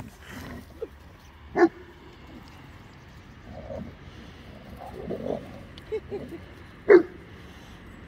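A dog gives two short, sharp barks, one about a second and a half in and one near the end, with softer sounds from the dogs in between.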